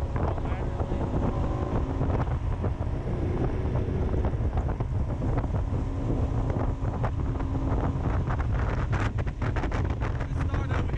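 A boat under way on a lake: its motor running steadily under heavy wind buffeting on the microphone.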